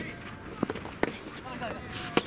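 Soft tennis rally: a rubber soft-tennis ball being struck and bouncing, giving a few sharp knocks, the loudest about a second in. Short voice calls from the players follow near the end.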